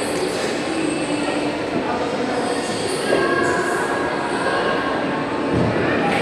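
Steady din of a busy indoor ice rink, with a few faint squeal-like tones about halfway through.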